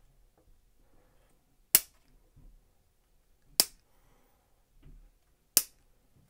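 Hobby nippers snipping plastic model-kit parts off the runner: three sharp snaps about two seconds apart.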